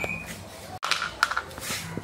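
Dog eating dry biscuits from a plastic bowl: a few short crunching clicks about a second in.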